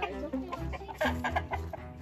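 Chickens clucking, with music playing underneath.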